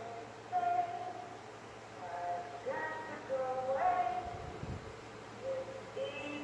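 A woman singing slow, drawn-out notes, heard through a television's speaker, with a brief low rumble about four and a half seconds in.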